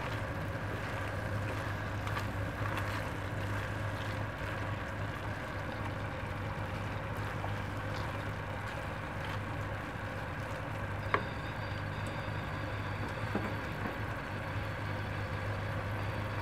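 A wooden spoon stirring shredded chicken filling in a pan, with soft, scattered scraping and stirring sounds over a steady low hum, and one sharp click about eleven seconds in.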